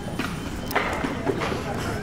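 Footsteps of several people walking on a paved sidewalk, hard shoe strikes roughly every half second, over a low background rumble.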